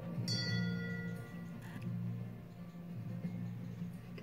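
Show-jumping start bell heard through a TV's speaker: one bright chiming ring about a third of a second in that fades over about a second and a half, the signal for the rider to begin the round. A steady low hum runs underneath.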